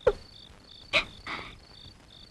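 Crickets chirping steadily in a high, even rhythm of about three chirps a second, as night ambience on a film soundtrack. Two short sharp sounds cut in, one at the very start and one about a second in.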